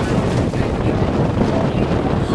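Wind buffeting the microphone over the steady low rumble of a fishing boat under way, with water rushing along the hull.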